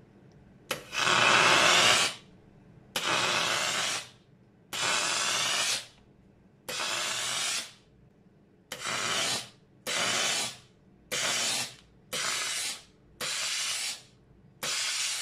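Handheld steam gun firing repeated jets of steam at a rubber sneaker sole: nine hisses with short gaps between them, each about a second long at first and growing shorter toward the end.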